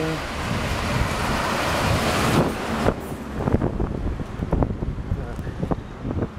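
Wind gusting over the camera microphone, a loud rushing noise that builds and then cuts off suddenly about two and a half seconds in, followed by lower street rumble with scattered short knocks and handling noise.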